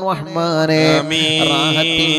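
A man's voice intoning an Islamic supplication in a drawn-out, chant-like melody over a microphone, holding a long note in the second half, with a steady low drone underneath.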